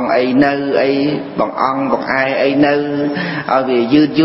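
A man's voice chanting a short Buddhist phrase over and over in long, held tones.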